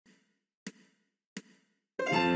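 Three count-in clicks for a backing track, evenly spaced about 0.7 s apart, about 86 beats a minute.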